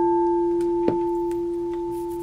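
A singing bowl ringing after one strike: a low steady tone with a higher overtone, fading slowly. It is rung to close out the reading with good energy.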